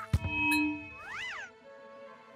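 Cartoon sound effects over background music: a sharp click, a short low tone, then a whistle-like glide that rises and falls once, about a second in.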